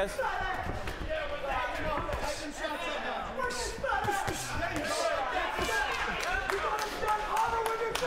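Boxing crowd and ringside voices shouting over one another, with a run of sharp thuds and slaps from punches landing at close range in a clinch, thickest in the second half.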